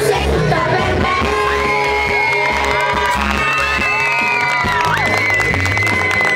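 A boy singing a pop song through a PA over an amplified backing track with a pulsing bass beat, holding long sliding notes.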